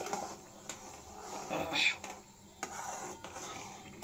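Steel spoon stirring thick tamarind-and-sugar chutney in a kadhai, scraping and clicking against the pan as the sugar dissolves, with the loudest scrape a little before halfway.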